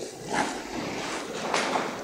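Pause with low, steady room noise in a small classroom, with a couple of soft, brief rustles.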